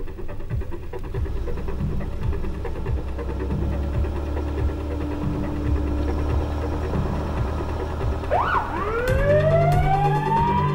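Car engine running, heard from inside the car. About eight seconds in, a siren gives a short up-and-down whoop and then begins a slow rising wail.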